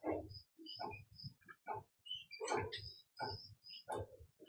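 A man's voice speaking quietly in short, broken phrases.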